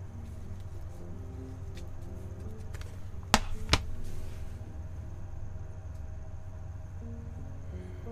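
Soft background music with faint held notes that change step by step, over a steady low hum. About three and a half seconds in come two sharp clicks, a third of a second apart.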